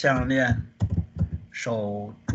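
A voice speaking a couple of drawn-out syllables, with a quick run of about five keystrokes on a computer keyboard in between.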